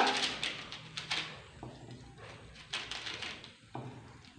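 Plastic seasoning sachet crinkling as seasoning is shaken out of it, a few short scattered rustles and clicks.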